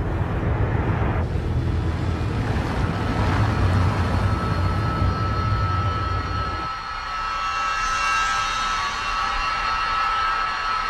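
A car driving, with a steady low engine and road rumble that drops away about two-thirds of the way in. A steady, higher hum carries on after it.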